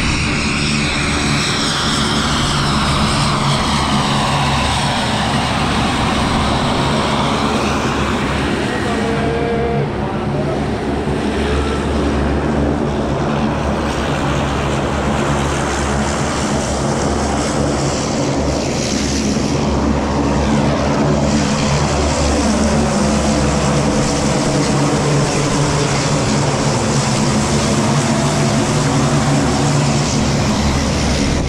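Propeller aircraft engine running steadily, with whines that slide down in pitch near the start and again a little past the middle.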